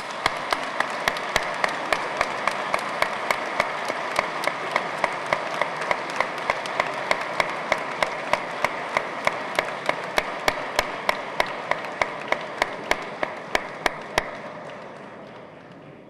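Audience applause, with one sharp clap standing out above the crowd at an even pace of about four a second. The applause dies away about two seconds before the end.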